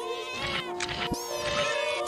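Horror film trailer soundtrack: music with a held chord under it and high, swooping, whine-like sounds rising and falling over it, with a low thump just after a second.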